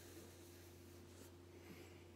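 Near silence: room tone with a steady low hum, and a faint soft hiss that fades out a little after a second.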